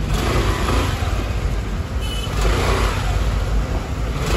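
A motor vehicle engine running with a steady low rumble.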